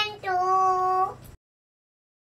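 A young girl singing: a short syllable, then one held note about a second long, after which the sound cuts off suddenly.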